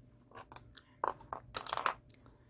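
Rice grains crunching and shifting inside a small flannel hand-warmer pouch as it is squeezed and handled, in a few short bursts, the loudest near the end.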